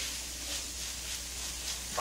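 Small dried anchovies glazed in oil and grain syrup sizzling over low-medium heat in a nonstick frying pan, with a wooden spatula stirring and scraping them: a soft, steady hiss with faint light clicks.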